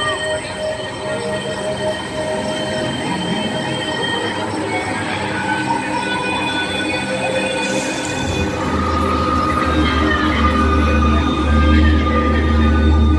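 Eerie ambient soundtrack over outdoor speakers: layered, held screeching tones that shift every few seconds, joined about eight seconds in by a deep low rumble.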